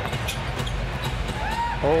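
A basketball being dribbled on a hardwood court over the steady murmur of an arena crowd.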